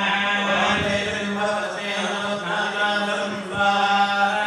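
Hindu priests chanting Sanskrit mantras through a microphone in a continuous, sustained recitation during a Chandika homa fire ritual.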